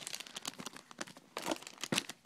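Packaging crinkling and rustling as Minikins blind-pack boxes and packs are handled, a run of irregular crackles with a few sharper ones in the second half.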